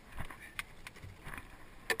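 Knocks and clatter of a bass boat's carpeted deck hatch being lifted and gear being rummaged through in the storage compartment, a few scattered taps with one sharper knock near the end.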